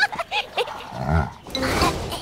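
Short, squeaky animal-like vocal noises from a cartoon, several quick squeals and a couple of deeper grunts.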